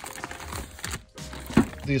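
Thin plastic bags crinkling as a hand lifts and shuffles bagged disc golf discs, in an irregular crackle, with a sharp click about one and a half seconds in.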